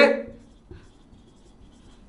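Marker pen writing on a whiteboard: faint scratching strokes of the felt tip, just after a man's voice trails off at the start.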